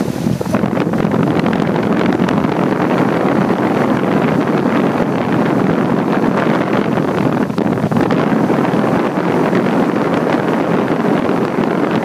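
Outdoor condenser unit of a 2006 Guardian 4-ton central air conditioner running: its condenser fan blows a loud, steady rush of air up through the top grille, buffeting the microphone held just over it.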